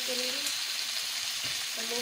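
Raw chicken cubes freshly added to hot oil and fried garlic paste, sizzling in a frying pan with a steady hiss as a wooden spatula stirs them.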